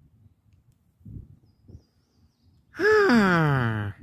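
A person's voice giving one long sigh-like 'ahh' near the end, rising briefly and then sliding steadily down in pitch for about a second.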